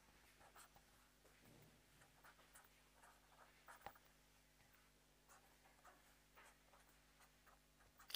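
Faint scratching of a pen or marker writing and drawing, in short irregular strokes, over a low steady electrical hum.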